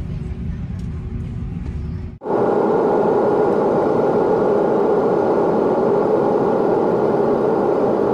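Jet airliner cabin noise. A steady low rumble gives way, about two seconds in, to a louder, even rushing noise recorded beside the wing while the plane descends with its flaps extended.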